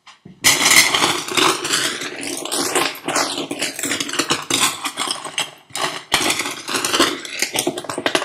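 Seashells rattled and shuffled together: a dense, continuous clatter of small hard clicks starting about half a second in, briefly thinning near six seconds. The sound is processed as 8D audio, sweeping around the listener.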